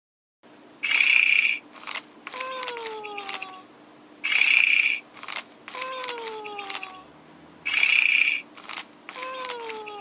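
Furby toy snoring as it falls asleep: a rasping in-breath followed by a whistled out-breath falling in pitch, repeated three times about every three and a half seconds, with small clicks between.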